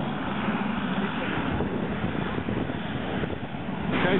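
Wind buffeting the microphone: a steady, even rushing noise.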